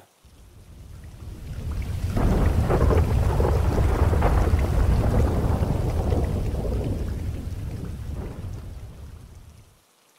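A long, deep roll of thunder with rain, swelling over the first two seconds and dying away near the end.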